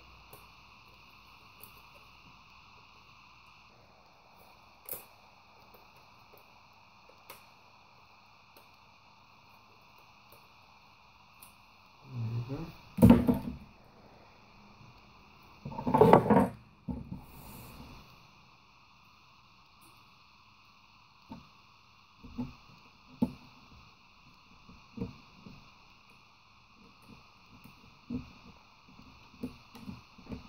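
Scattered small clicks and knocks of plastic laptop parts being handled on a desk, over a faint steady hiss. A short muttered voice and another brief loud sound come a little past halfway, and the handling clicks grow more frequent after that.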